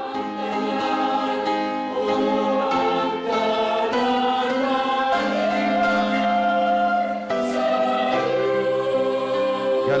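A choir singing a hymn in slow, held chords that change every second or so.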